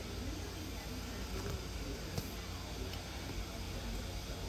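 A faint voice in the background over low room noise, with one light click about two seconds in.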